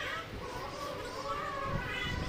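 Indistinct chatter of many overlapping voices, women's and children's, with no single clear speaker.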